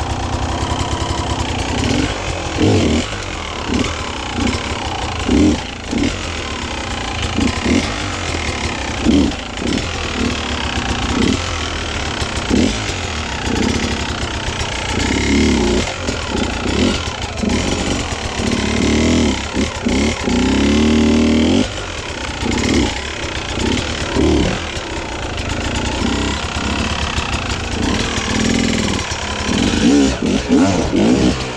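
Beta enduro motorcycle engine running, revved in repeated short throttle bursts every second or two, with one longer held rev about two-thirds of the way through, as the bike is wrestled up a steep rock step.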